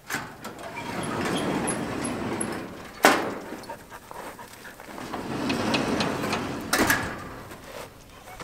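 Corrugated steel barn door sliding on homemade rollers made from old motor pulleys. It rumbles open and stops with a loud bang about three seconds in, then rumbles shut and ends with a second bang near the end.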